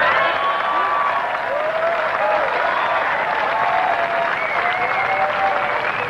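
Tennis crowd applauding and calling out, a steady clamour of clapping with voices rising over it, just after the umpire announces a code violation.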